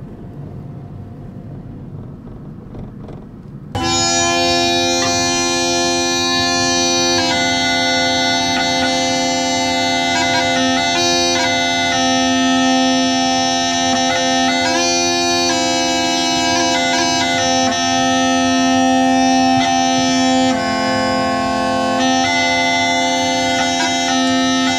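Low rumble of a car driving for the first few seconds, then a bagpipe tune starting suddenly about four seconds in: steady drones held underneath a lively melody.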